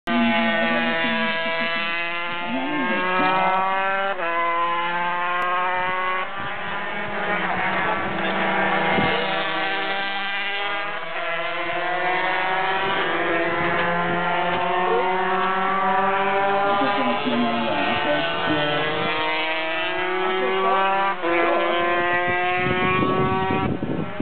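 Racing motorcycle engines at high revs passing on the circuit, the pitch climbing steadily and then dropping sharply with each upshift, over and over.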